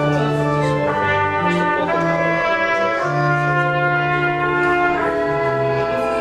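Church organ playing a postlude: sustained chords over held bass notes, changing every second or so.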